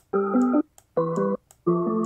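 Slices of a chopped A-minor keyboard melody loop triggered one at a time in FL Studio's Slicex sampler: three short held chords, each starting suddenly and cut off abruptly at the end of its slice.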